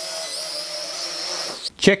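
Mengtuo M9955 X-Drone quadcopter flying, its motors and propellers giving a steady high-pitched whine that cuts off suddenly about a second and a half in.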